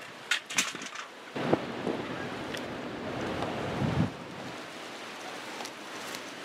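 Wind buffeting the microphone: a steady rushing noise, preceded by a few sharp clicks and one louder knock in the first second and a half.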